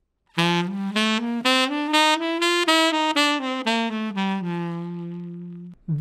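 Tenor saxophone playing a bebop scale up an octave and back down in quick even notes. The notes are tongued with a 'dooden' articulation going up and a 'doo dah' articulation coming down. It ends on a long held low note that fades out.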